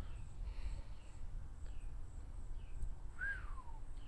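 Faint bird calls over open outdoor ambience: a few short chirps and, near the end, one call that slides downward in pitch. A steady low rumble of wind on the microphone runs underneath.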